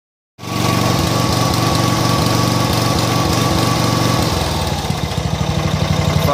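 John Deere riding mower engine running at high throttle with a steady whine, then throttled down to idle about four seconds in. It runs rough, which the owner traced to an over-oiled foam air filter.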